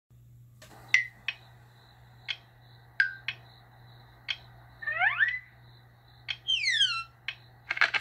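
Cartoon soundtrack from a television, picked up by a phone: a run of sharp plinks and short sliding tones, with a cluster of rising slides about five seconds in and several falling slides near the end. Under it runs a steady low hum and a faint pulsing high tone.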